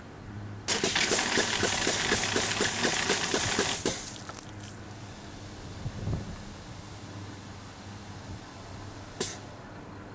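Compressed-air foam backpack nozzle discharging pepper-spray foam at close range against a metal container wall: a loud rushing hiss with a rapid pulse, about four a second, starting about a second in and cutting off after about three seconds. A steady low hum follows, with a single sharp click near the end.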